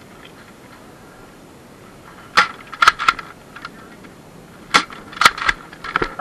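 Nerf foam-dart blasters firing in a backyard battle: a scattered run of sharp pops and clacks, about eight of them, beginning a little over two seconds in.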